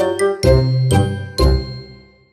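Closing music jingle: bright chiming notes over deep bass notes, a new chord about every half second, the last one ringing out and fading away near the end.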